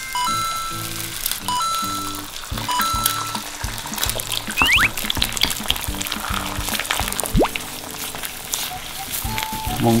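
Light background music playing over eggs sizzling in a frying pan as they are cracked in and stirred with a wooden spatula. A couple of short rising whistle-like sounds come in around the middle.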